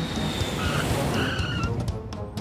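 Cartoon sound effect of a small airplane rushing across a runway, a noisy whoosh with two short tyre-like squeals.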